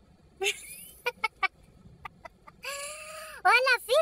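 A voice making chicken-like clucks: a few sharp clicks in the first half, then a held call and quick swooping calls near the end.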